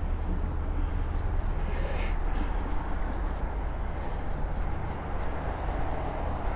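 Steady low rumble of distant road traffic in a town, with no sudden sounds standing out.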